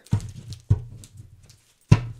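Three sharp knocks of a deck of tarot cards against the table: two about half a second apart, then the loudest about a second later, near the end.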